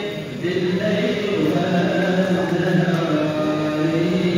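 A man chanting an Islamic religious recitation, holding long notes that slowly rise and fall.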